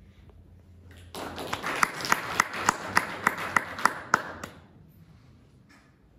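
Audience applauding. The applause begins about a second in and dies away after about three and a half seconds. Within it, one clapper's sharp, evenly spaced claps stand out about three times a second.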